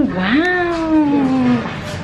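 A woman's voice giving one long wordless call, rising in pitch and then sliding slowly down over about a second and a half.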